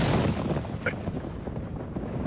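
A rumbling explosion- or thunder-like sound effect, inserted as the fortune-teller's moment of 'concentration'. It starts suddenly and loud, then rolls on, slowly easing off.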